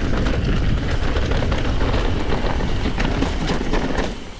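Mountain bike descending a rough dirt trail: a steady rush of wind on the camera microphone and the rumble of tyres on the ground, with frequent clattering knocks as the bike is jarred over bumps.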